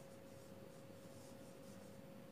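Faint marker writing on a whiteboard in near silence, over a thin steady tone.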